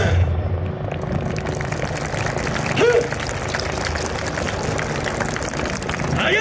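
Steady outdoor background noise just after the dance music stops, with one short shouted call about three seconds in.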